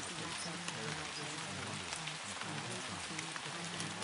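Steady rain recording with scattered drop ticks, over a low, indistinct spoken voice of subliminal affirmations that lies underneath it.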